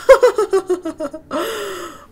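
A woman laughing in a quick run of short bursts that fall in pitch, then a long breathy exhale.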